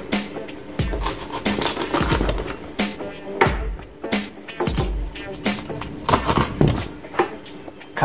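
Kitchen knife chopping raw small birds on a plastic cutting board: irregular sharp knocks, about one or two a second, over background music.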